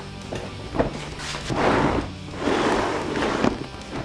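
A large epoxy-hardened papier-mâché pumpkin shell scraping and sliding across a plywood workbench as it is turned and set upright, in two long rubbing scrapes after a short knock.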